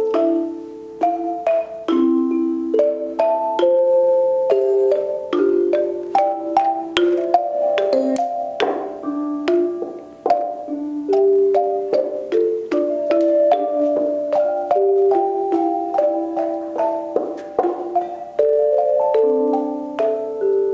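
Xylophones and metallophones playing a tune together, with mallet-struck notes in several parts at once and a steady rhythm.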